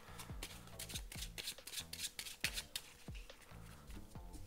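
A small pile of playing cards being shuffled by hand, making irregular soft clicks and flicks. Faint background music with low held notes plays underneath.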